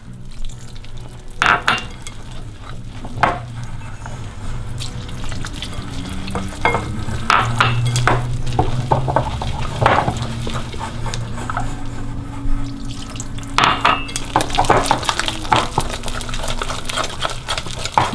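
A wire whisk beating flour and water into a thick batter in a glass bowl, with irregular taps and scrapes of the whisk against the bowl. A steady low hum runs underneath.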